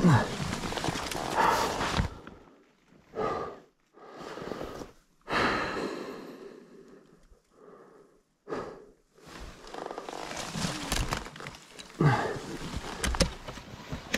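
A person's strained breathing and short grunts of effort, in separate bursts with pauses between, while struggling free from under a fallen motorcycle, with rustling and scraping of gear and brush at the start and again near the end.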